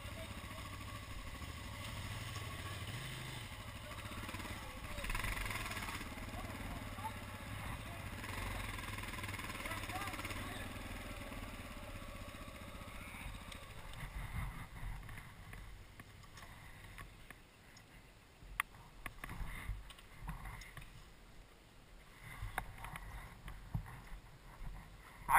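Dual-sport motorcycle engine running steadily at low speed, heard faintly from a helmet-mounted camera. About halfway through it drops to a quieter level with scattered short knocks and clicks.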